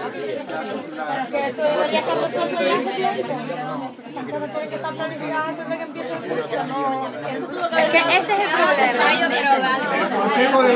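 Several people talking at once, their voices overlapping into indistinct chatter that grows louder and busier near the end.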